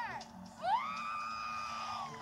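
Film preview soundtrack played through a portable DVD player's small speaker: a high pitched note swoops up about half a second in, holds steady for over a second, and falls away at the end.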